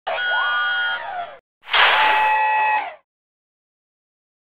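Two synthesized intro sound effects in a row, each a bit over a second long: the first a chord of held electronic tones with a sliding pitch inside it, the second starting with a hiss over another held electronic chord.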